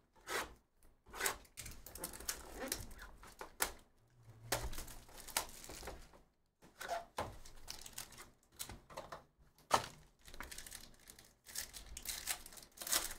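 Hands opening a hobby box of trading cards: packaging crinkling and tearing in irregular stretches, with a few sharp knocks of the box on the table, and a foil card pack being handled near the end.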